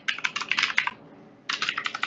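Typing on a computer keyboard: a quick run of keystrokes in the first second, then a second run starting about one and a half seconds in.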